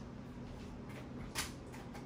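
Quiet kitchen room tone: a faint steady low hum, with one soft click about one and a half seconds in.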